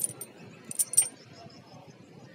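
Small metal clicks and clinks of a toy trailer's wire drawbar being hooked onto a mini tractor's metal hitch: one sharp click at the start, then a quick cluster of three or four clinks just before a second in.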